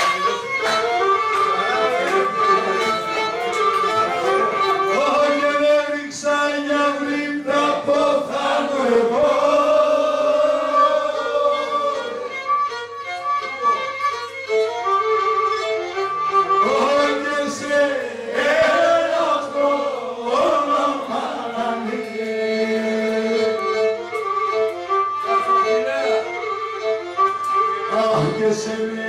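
Pontic lyra, a small bowed three-string fiddle, playing an ornamented melody in a Pontic table song (muhabeti). Over it a man sings long, bending phrases into a microphone in places.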